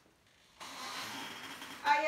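Plastic and paper wrapping rustling as wrapped nativity figures are lifted out of a bag. It starts suddenly after a moment of near silence and goes on as a steady hiss.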